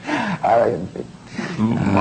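A man laughing in a few short bursts.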